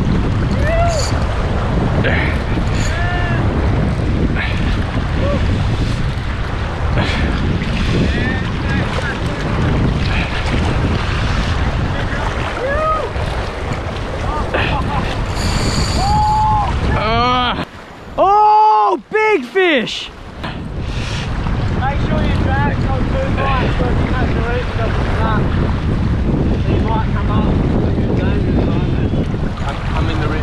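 Wind buffeting the microphone over the wash of surf and choppy sea. A little past the middle the wind noise briefly drops out and a few short pitched tones that rise and fall stand out.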